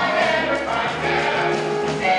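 Mixed chorus of young male and female voices singing a musical-theatre number together, with sustained, shifting sung notes.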